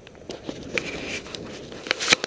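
Irregular small clicks and rustling over a low noise bed, with a faint brief whine about a second in.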